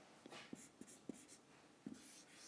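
Faint sound of a marker writing on a whiteboard, with a few soft ticks of the pen tip.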